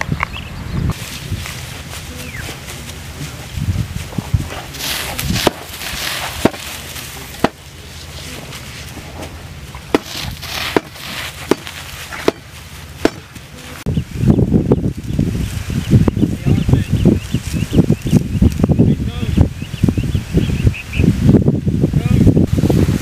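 Dry grass stems rustling and crackling as they are gathered and laid over a canvas tarp, with scattered sharp snaps of stems early on; the handling grows louder and denser about two-thirds of the way through.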